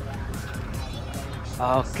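Car engine idling, a low steady rumble; a man says a short word near the end.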